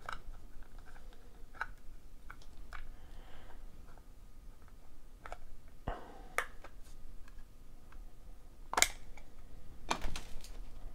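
A clear hard-plastic trading card case being handled and pried open: small plastic clicks and scrapes, with a sharper click about six seconds in and the loudest snap about nine seconds in.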